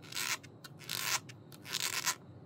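Fingers rubbing across the grippy rubber sole of a platform high-heel shoe: three short rubbing strokes about three-quarters of a second apart, with faint ticks between.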